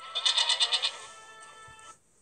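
A cartoon goat's bleat sound effect: one short, quavering bleat lasting under a second, over soft steady background music that cuts off near the end.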